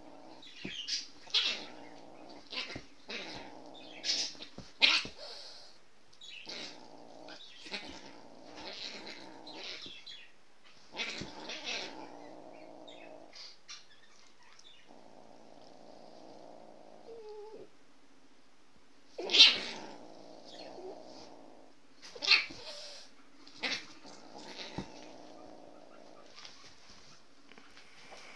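A kitten and a dog play-fighting, with repeated growling yowls, each a second or two long, and sharp hissing bursts between them. The loudest burst comes about 19 seconds in.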